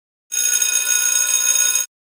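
A bright, steady ringing signal from a workout timer, lasting about a second and a half and cutting off sharply, marking the change to the next exercise.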